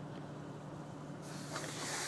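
Steady cabin hum of a parked car with its engine idling and the air-conditioning blower hissing from the vents; the airy hiss grows a little louder in the second half.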